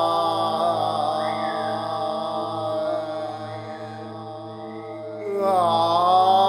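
Chanted vocal music with long held notes that glide slowly in pitch. It drops quieter around the middle and swells back near the end.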